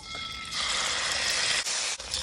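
Prahok, Cambodian fermented fish paste, sizzling as it hits hot cooking oil in a wok, a loud steady hiss that starts about half a second in.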